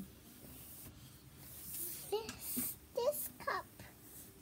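A young child's soft voice murmuring a few short sounds in the second half, after a light rustle of the picture book's paper.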